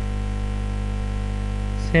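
Steady, low electrical mains hum of the recording, with several even tones stacked above one another. A voice begins right at the end.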